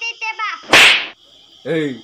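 A single sudden, loud, sharp burst of noise, like a crack, about three-quarters of a second in, dying away within about a third of a second.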